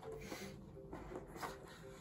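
Faint rubbing and scraping of hands working at a tight lid on a box as it is prised open, with a few small ticks.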